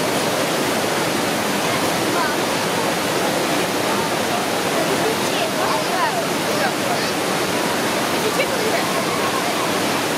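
Whitewater pouring over a river weir: a steady, unbroken rush of falling water.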